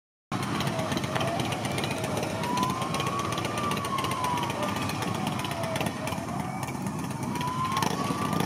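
Police van sirens wailing, a slow rise and fall in pitch taking several seconds per sweep, over the steady noise of idling and crawling traffic.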